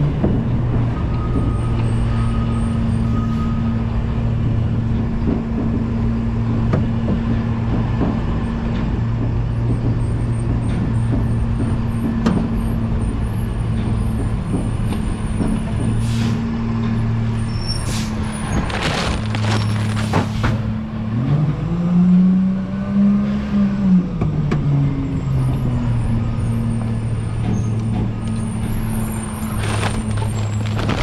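Engine of a McNeilus rear-loader garbage truck running steadily as the truck rolls slowly along, heard from the rear riding step. A little past halfway come several short air-brake hisses, then the engine revs up and falls back over a few seconds.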